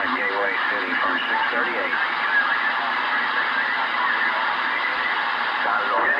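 Galaxy DX2517 CB radio receiving channel 38 lower sideband: garbled sideband voice for about the first second, then a dense, steady jumble of overlapping stations and static, the crowding that makes the call channel unusable for conversation.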